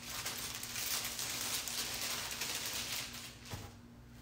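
Folded saris being handled and shuffled on a stack: a steady rustle of cloth with small crackles. It dies away about three and a half seconds in.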